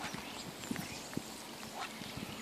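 Steady rain falling on a lake, a fine even hiss, with a few irregular sharp taps close by.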